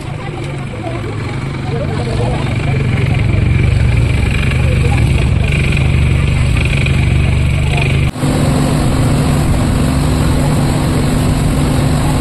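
Small ferry boat's engine running steadily with a low hum. About eight seconds in, the sound breaks off briefly and resumes with a slightly different, steadier hum.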